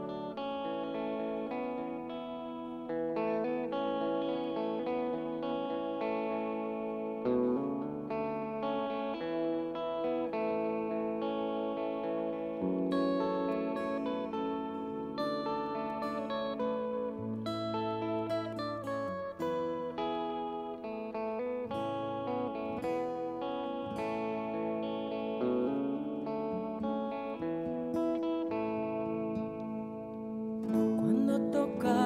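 Live instrumental introduction to a song, played on an electric guitar with effects and an acoustic guitar, with sustained chords that change every few seconds.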